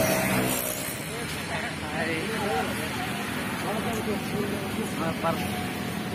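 Outdoor street ambience: voices talking in the background over a steady low rumble of road traffic.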